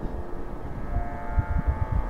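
Low, uneven rumble of microphone noise, with faint steady tones running above it.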